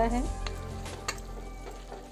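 Thick masala paste with peas and potatoes sizzling as it fries in oil in a pressure cooker, stirred with a wooden spatula that knocks against the pan a few times.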